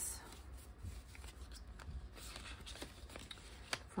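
Paper banknotes and a card being handled and slid into a clear plastic binder envelope: soft, scattered paper rustling with light clicks, and one sharper tick near the end.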